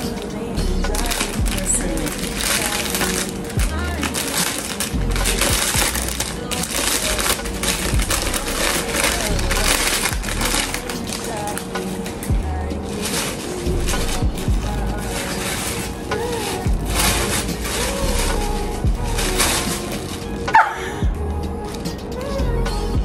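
Plastic and paper wrapping crinkling as a packaged item is unwrapped by hand, over background music with a deep recurring beat.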